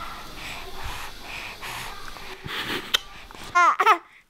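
A baby's soft breathy noises, then a short high-pitched coo with a bending pitch near the end.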